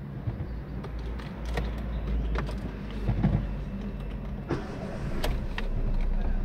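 Volkswagen Gol Trend's four-cylinder engine running at idle, a steady low hum heard from the driver's seat, with scattered light clicks and knocks.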